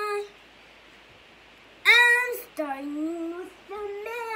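A young boy singing unaccompanied: a held note ends just after the start, then after a pause he lets out a loud high note about two seconds in that drops into a lower sung phrase.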